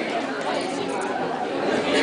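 Audience chatter in a large hall: many voices talking at once, with no single voice standing out.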